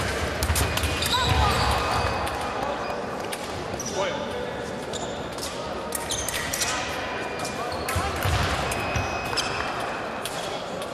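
Fencers' footwork thudding and stamping on the sports-hall floor, with sharp clicks of blades meeting, in a large hall. The heaviest thuds come in two spells: early and again near the end.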